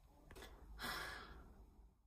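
A woman's soft, breathy sigh, one exhale of about a second that fades out, after a faint click.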